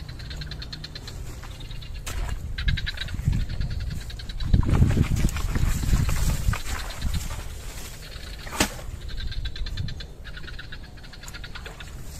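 Insects chirping in rapid pulsed trains, with a louder stretch of low rushing noise lasting a couple of seconds about halfway through, as a bucketful of white powder is flung out. A sharp click about two seconds in and another near the end.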